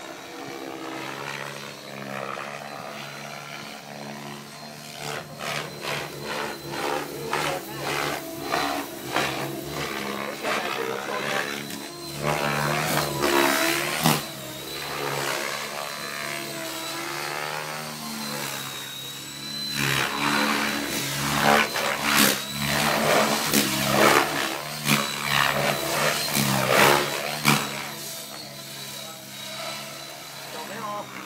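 KDS Innova 700 radio-controlled helicopter flying aerobatics: a steady high motor whine under rotor-blade noise that rises and falls. In two long stretches the blades chop in rapid pulses as the helicopter is thrown through manoeuvres.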